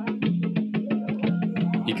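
Percussion music for Changó from the Afro-Caribbean tradition: a quick, even run of drum strokes, about eight a second, over a steady low note. A man's voice comes in just before the end.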